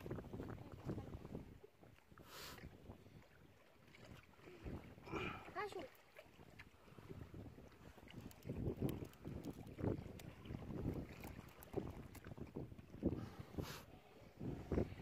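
Wind buffeting the microphone in an uneven low rumble, with a few short scrapes and, about five seconds in, faint voices.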